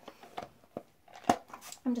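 Handling noise from a jar of mango butter and its lid: small clicks and rustles, with one sharp click a little past halfway.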